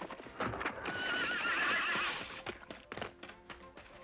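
A horse whinnying once with a long, trembling call about a second in, over scattered hoofbeats as it comes up and stands.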